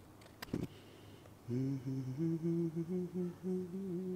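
A man humming a short tune of a few held low notes, starting about a second and a half in. Before it, two brief clicks.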